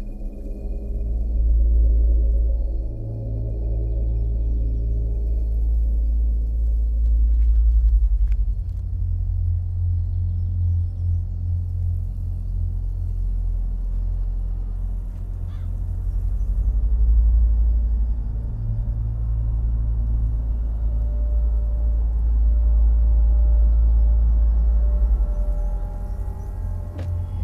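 Low, droning rumble of an ambient film score, swelling and easing in slow waves. Held higher tones fade out after the first several seconds.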